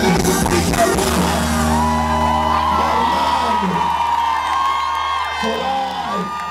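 A live band's closing chord is held over a sustained bass note as the song ends, while the crowd whoops and yells over it.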